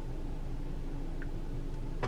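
Steady low hum of a car cabin with the car standing still, with one faint tick about a second in.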